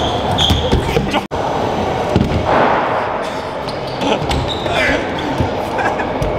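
Stunt scooter wheels and decks knocking and clattering on a concrete skatepark floor, with voices mixed in. The sound cuts out for a moment about a second in.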